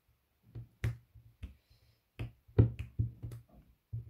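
Square diamond-painting drills clicking into place as a drill pen presses them onto the adhesive canvas one at a time: several sharp little clicks at irregular intervals.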